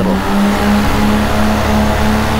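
Paramotor engine and propeller running steadily in flight, a constant drone whose pitch creeps slightly upward.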